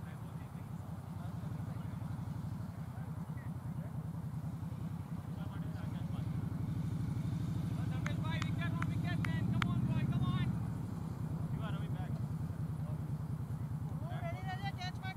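A low rumble that builds slowly to its loudest about ten seconds in, then drops back suddenly. Distant voices call out a few times around eight to nine seconds in and again near twelve seconds.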